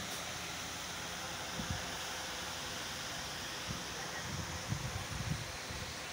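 Steady hiss of an air conditioner and wall fan running, with a soft low thump about a second and a half in and several more in the last two seconds.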